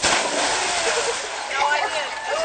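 Water splashing as a boy lands in a pond: a sudden loud rush of spray that settles after about a second and a half, with young voices calling out near the end.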